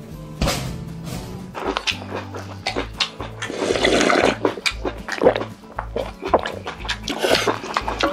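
Background music with a steady, pulsing bass line, and scattered short clicks and knocks over it. A sharp knock comes about half a second in.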